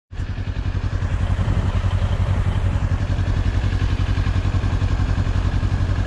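2023 Kawasaki Ninja 400's parallel-twin engine idling steadily with a rapid, even low pulse.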